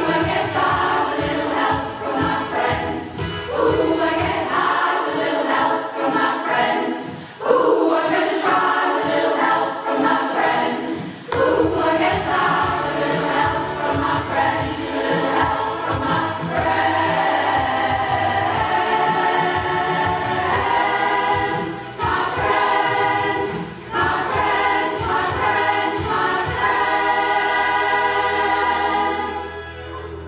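Community choir of mostly women's voices singing, closing the song on a long held chord that cuts off just before the end.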